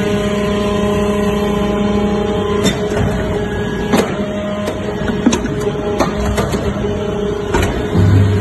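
Hydraulic briquetting press running, with the steady hum of its hydraulic power unit. Several sharp metallic knocks come from the press as it compacts metal chips into cylindrical briquettes.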